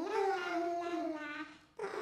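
A long, wavering howl that fades out about a second and a half in, followed by another howl starting just before the end.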